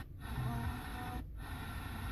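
Car FM radio being tuned up the dial between stations: a hiss of static and weak signals with faint scraps of programme audio, cut twice by short silences as the tuner mutes on each frequency step.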